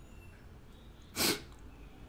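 A single short, sharp burst of breath noise a little over a second in, over faint room hiss.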